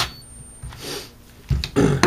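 A cordless drill/driver cuts off as it finishes tightening the coil screws, then handling knocks and clunks come in from about 1.5 s in as the drill is pulled away from the engine.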